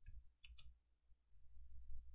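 Faint clicks of a computer mouse: one at the start and a quick pair about half a second in, over a low faint rumble.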